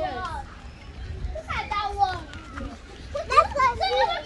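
Young children's voices, high-pitched calls and chatter in several short bursts, the loudest late on.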